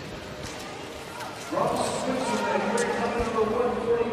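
Quiet background noise from the rink broadcast. About a second and a half in, a man's voice comes in and carries on.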